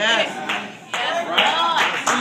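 Congregation clapping with voices calling out in response, the claps coming thicker in the second half.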